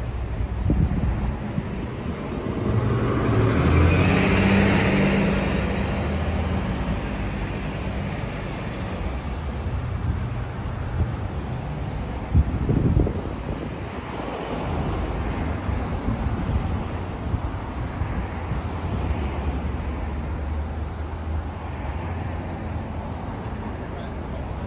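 Street traffic noise with a steady low rumble and wind buffeting the microphone. A vehicle passes a few seconds in, swelling and fading over several seconds. A single sharp knock comes about halfway through.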